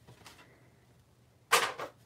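Low room tone, then near the end a single brief rustle as an embossed cardstock panel is picked up and slid across paper.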